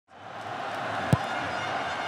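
Stadium crowd noise fading in, with one sharp thud of a football being struck for a corner kick about a second in.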